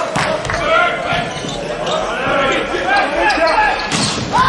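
Volleyball being struck during a rally: a sharp hit right at the start as the jump serve is struck, lighter ball contacts through the middle, and a louder hit near the end as the ball is spiked at the block.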